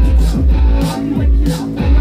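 Live rock band playing: electric guitar and bass guitar over a drum kit, with a heavy bass line and a steady beat of drum and cymbal hits.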